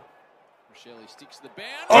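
Faint voices and a few light knocks, then near the end a loud, falling 'ooh' as men react.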